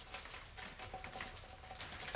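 Faint, irregular light taps and handling noise from clear plastic slake-test tubes being gently shaken and touched by hand.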